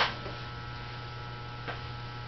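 An acoustic guitar chord struck right at the start dies away quickly, leaving a pause filled by a steady low electrical hum, with one faint tap near the end.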